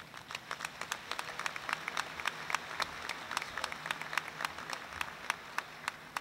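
Audience applauding, a dense patter of claps that thins out near the end.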